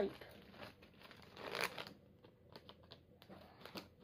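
Faint crinkling of a plastic minifigure polybag as it is handled and cut open with scissors, with one louder crinkle about a second and a half in.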